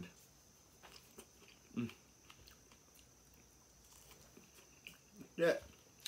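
A person chewing pieces of a fresh fig: soft, scattered wet mouth clicks, with a short hum about two seconds in.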